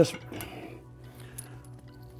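Quiet background music, with a couple of faint clicks from the metal clamp and bar of a gym machine's lever arm being handled.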